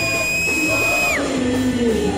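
Live Latin gospel band music played loud through a hall's speakers: a high held lead note that slides down and stops a little past a second in, over the band's accompaniment, with a voice gliding downward in the second half.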